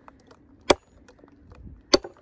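Two sledgehammer blows on a wedge driven into an ash log to split it, sharp single strikes a little over a second apart.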